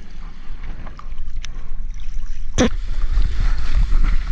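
Seawater sloshing and splashing against a mouth-held GoPro as a surfboard is paddled into a breaking wave, over a low rumble of water and wind on the microphone. There is a sharp splash about two and a half seconds in, and the rush of whitewater grows louder near the end.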